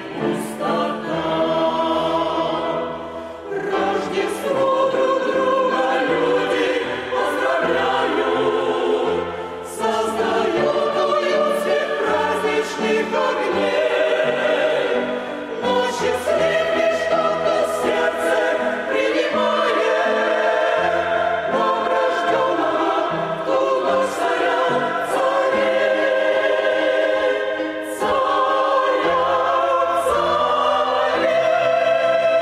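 Mixed choir of women's and men's voices singing a hymn in Russian, phrase after phrase with brief pauses between.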